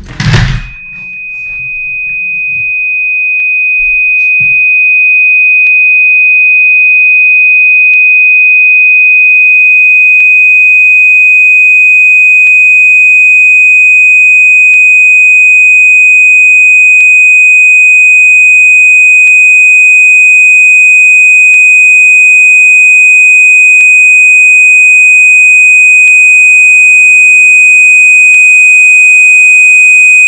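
A loud thump just after the start, then a single steady high-pitched electronic sine tone that swells to full loudness over the first few seconds and is held unbroken.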